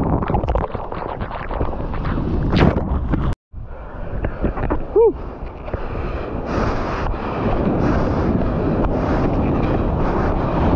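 Shorebreak surf churning around a GoPro, with wind buffeting its microphone. The sound drops out briefly a little over three seconds in; after that, waves break and wash up the sand under steady wind noise, with one short pitched note about halfway.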